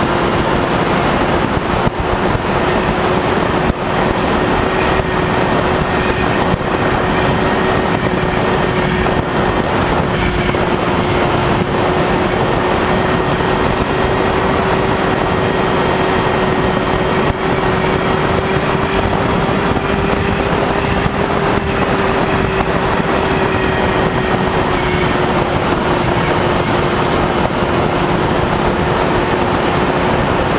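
The HK Bixler's brushless electric motor and pusher propeller running steadily in flight, a steady hum that rises slightly in pitch a little past the middle and eases back, over loud wind rush on the onboard camera's microphone.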